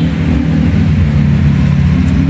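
A motor vehicle engine idling with a steady low hum that does not change in pitch.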